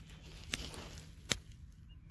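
Two short, sharp clicks about three-quarters of a second apart, the second louder, over a faint low rumble.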